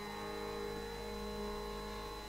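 Steady tambura drone sounding quietly on its own between sung phrases.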